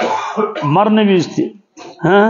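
A man's voice: a short throat-clearing sound at the start, then drawn-out spoken syllables, and another short rasp near the end.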